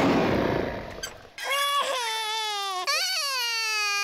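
A cartoon robot dinosaur's loud roar, already under way, fades out within the first second or so. A small child's voice then starts crying about a second and a half in: one long wail that slowly falls in pitch, with a short break near the three-second mark.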